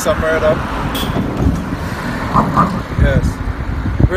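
A steady low rumble of outdoor background noise, with a few short snatches of a man's low voice.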